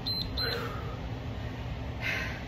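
Two short, high electronic beeps from a Tabata interval timer, about a third of a second apart, marking the end of a 20-second work interval, over a steady low hum.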